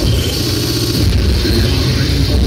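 Loud live band music heard mostly as a deep, boomy bass line, overloading the recording.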